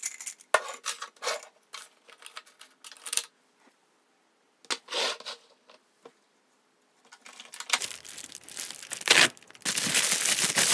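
Scattered light clicks and short rustles of small objects being handled, then from about seven seconds a plastic bubble mailer crinkling as it is handled, growing louder toward the end.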